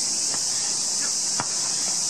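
A steady, high-pitched chorus of insects that does not let up, with a single sharp thud about one and a half seconds in.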